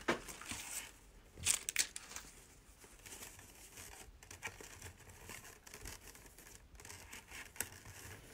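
Ribbon rustling and crinkling in short, scattered bursts as it is scrunched into loops in a Bowdabra bow-making tool. The louder rustles come right at the start and about a second and a half in.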